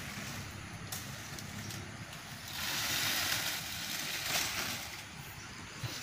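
Wind noise outdoors, a steady rushing that swells for about two seconds midway, with a few faint clicks.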